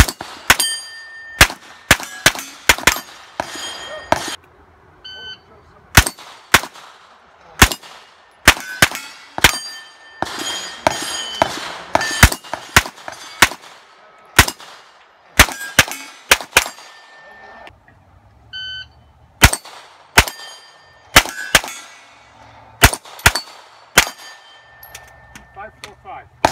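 A Sig MPX pistol-caliber carbine fires strings of rapid shots at steel targets, and each hit is followed by the ringing clang of the plate. A shot timer beeps about five seconds in and again past eighteen seconds, and each beep starts a new string of shots.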